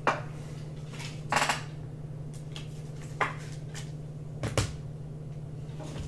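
Trading-card handling on a tabletop: a few short knocks and clicks, one with a brief scrape about a second and a half in and a quick double knock near the end, over a steady low electrical hum.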